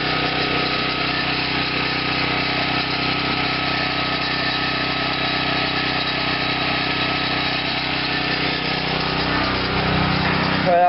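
Small gasoline engine with a weedeater carburetor and a homemade plasma-reactor fuel pretreater, running steadily at a constant speed.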